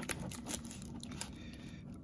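Faint rustling and crinkling of a paper bubble mailer being handled as a graded card slab is slid out of it.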